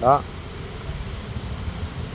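A single short spoken word, then a steady low background rumble with no distinct events.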